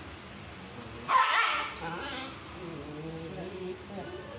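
Young dog barking once, loud and short, about a second in, with a fainter bark just after. It is barking at a trainer's fist held up before its face during controlled-aggression training.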